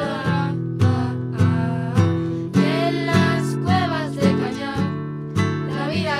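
Two acoustic guitars strumming chords in a steady rhythm, with a group of girls' voices singing the melody over them.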